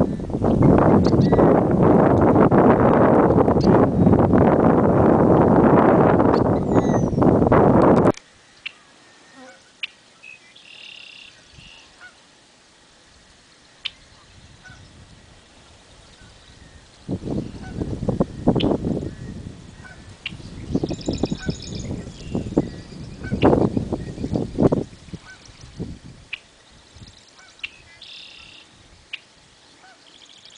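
Wind buffeting the microphone heavily for the first eight seconds, then it stops abruptly. After that it is much quieter, with a songbird giving a few short buzzy phrases and more gusts of wind on the microphone in the middle.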